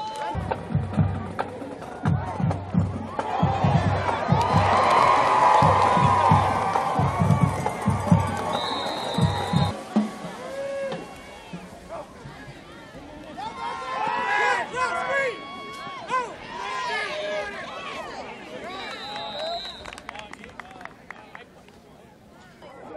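Football stadium ambience: a run of bass-drum beats with a swell of crowd cheering for the first half, then quieter crowd and player voices. A short high whistle blast, typical of a referee's whistle, sounds twice, about nine seconds in and again near the end.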